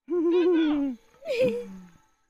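Two short wavering vocal coos, the first held and sliding slowly down in pitch, the second starting higher and dropping to a low note.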